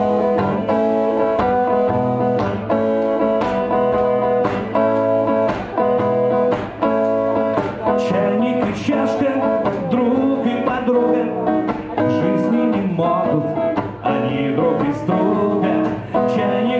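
Electric guitar playing a song's introduction alone, chords strummed in a steady rhythm of about two strokes a second.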